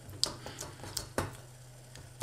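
A wire whisk stirring melting chocolate and margarine in a stainless steel bowl, with a few light clicks of metal on metal, over a faint steady low hum.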